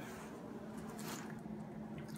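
Quiet room tone with a steady low hum and a faint soft click about a second in.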